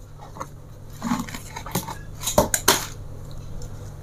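A ceramic dinner plate being handled on a table: a few scattered sharp clicks and knocks, the two loudest close together about two and a half seconds in, over a low steady hum.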